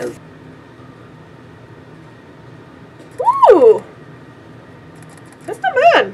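Quiet room tone, broken about three seconds in by a woman's short wordless vocal sound that glides up and then back down in pitch.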